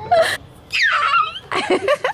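Laughter and a high squeal: a short burst of laughter, then a high-pitched squeal that slides down in pitch, then more laughter near the end.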